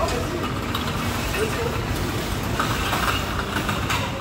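Steady ambient noise of a market hall: a continuous low rumble, like traffic or vehicles, with indistinct voices coming and going.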